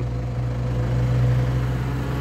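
A motor vehicle's engine running steadily at idle, a low hum with no change in pitch.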